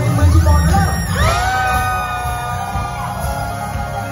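Live pop-rock band playing, with drums and bass underneath. About a second in, an electric guitar slides up into one long held note that lasts about three seconds.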